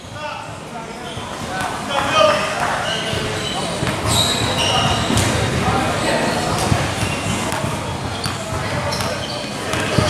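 A basketball bouncing on a gym's hard court, with players' and spectators' voices in the background, all echoing in a large hall.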